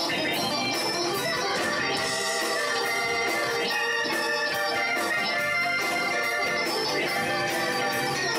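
Live organ solo in a Hammond organ sound, played on a stage keyboard over a band with drums, with dense held and quickly moving notes.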